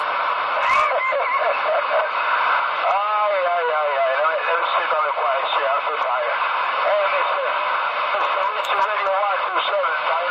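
A CB radio's speaker playing an incoming transmission: voices on the channel, garbled and not made out, under steady static hiss, with the narrow, thin sound of a radio speaker.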